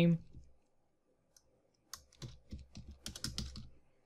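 Computer keyboard typing: a quick run of keystrokes starting about two seconds in, after a short silence.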